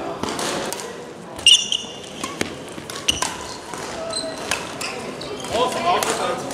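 Badminton doubles play on a sports-hall court: a sharp, high shoe squeak on the court floor about a second and a half in, followed by a few short sharp knocks, all echoing in the large hall.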